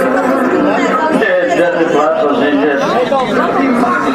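Roadside crowd of spectators chattering, with many voices talking over one another at once.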